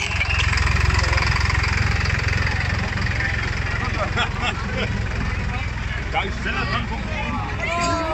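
Fendt tractor's diesel engine running at low speed as it passes close by, a steady low rumble that is strongest in the first half. People's voices come in over it from about halfway through.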